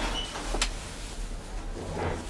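Steady low electrical hum under a noisy background, with one sharp click a little over half a second in.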